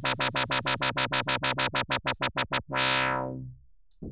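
Ableton Live's Operator synth playing a sawtooth dubstep wobble bass: its filter is swept open and shut by an LFO about eight times a second. The wobble slows down about two seconds in, and a last longer swell fades out.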